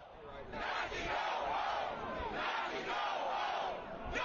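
A crowd of protesters shouting and yelling at once, many voices overlapping with no single voice standing out. It fades up over the first second, then holds steady.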